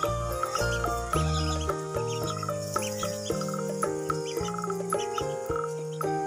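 Background music with sustained melodic notes over a low bass line, with ducklings peeping faintly through it.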